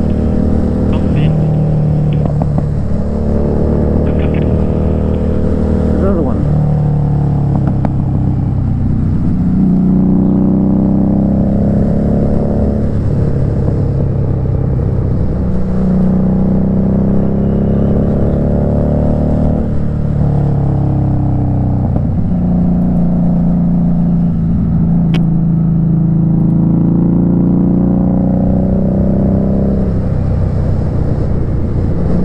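Motorcycle engine heard from the rider's seat while riding along a winding road, its pitch rising and falling every few seconds as the throttle is rolled on and off.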